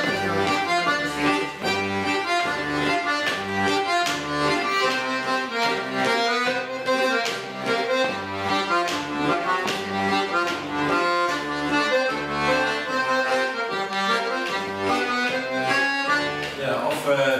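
Button accordion played solo, with no singing: a melody over a steady, rhythmic bass pulse in a rock-and-roll shuffle style.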